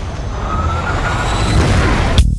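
Fighter jet engines: a loud, dense rush with a heavy low rumble and a faint whine that rises slowly in pitch.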